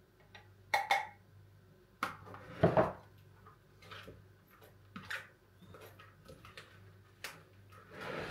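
Spoon scraping and tapping against a glass blender jug and a plastic mixing bowl while soft purée is spooned out and stirred, with a louder knock between two and three seconds in and lighter clicks after it.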